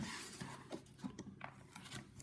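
Quiet rustling of a paper card and a notebook being handled on a tabletop, with a few light taps and clicks.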